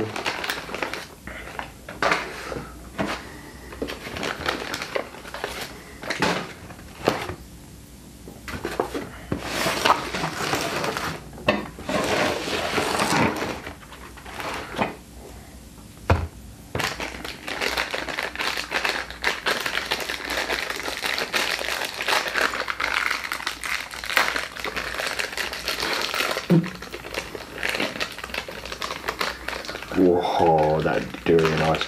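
Paper food wrappers crinkling and rustling as they are unfolded and handled, in irregular spells with short quieter pauses, with occasional light knocks of takeaway boxes being moved about on a wooden table.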